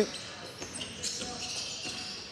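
Faint sounds of basketball play in a sports hall: a ball being dribbled on the hardwood court, against the hall's low background noise.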